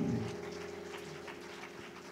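A keyboard holding a soft, sustained chord that fades gradually, heard under the end of a spoken word.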